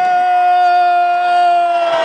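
A person's voice holding one long, high note that sinks slightly in pitch near the end.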